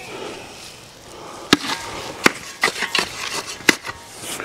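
Shovel digging and scooping dirt, with three sharp knocks of the blade and smaller scrapes and clicks between them.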